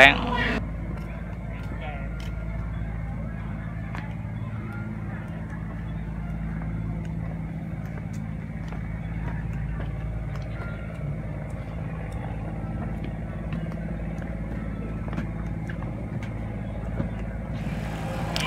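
Steady low machine hum, with faint scattered ticks over it.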